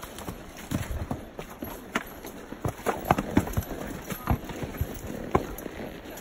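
Mule hooves striking rocky, leaf-covered ground at a walk: an uneven series of sharp clops.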